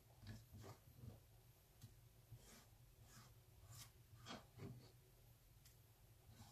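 Near silence with a series of faint, short scrapes and light taps: fingertips gathering chopped herbs and tomato off a wooden cutting board.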